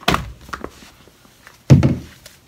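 Thuds and light knocks of shoes being handled in a closet: one sharp thud at the start, a few small taps, then a louder, deeper thud near the end.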